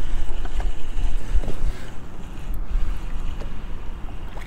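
Wind buffeting the microphone in a steady low rumble, with a few faint clicks.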